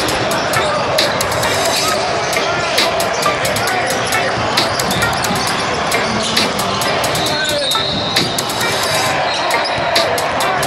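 A basketball game on a hardwood court in a big gym: the ball bouncing on the floor, sneakers squeaking, and players and spectators calling out in the echoing hall. Music plays underneath.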